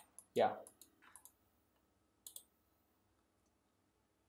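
Computer mouse button clicks: a quick cluster of sharp clicks in the first second or so, then a pair of clicks about two and a half seconds in. A man says "yeah" just after the first clicks.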